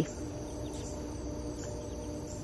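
Steady, high-pitched chorus of calling insects.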